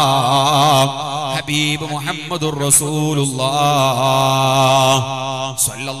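A man chanting melodically into a microphone, drawing out long, wavering notes, with short breaks between phrases.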